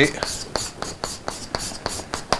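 Chalk writing on a blackboard: a quick run of short taps and scratches, about five a second.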